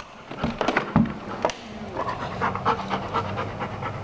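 Dog panting in quick, repeated breaths, with a faint low steady hum coming in behind it about halfway through.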